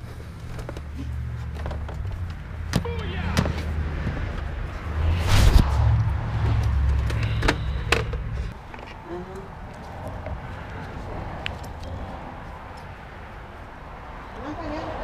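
Low rumble that swells about five seconds in and drops away after about eight seconds, with a few sharp clicks and knocks as a plastic game console and its power brick are handled.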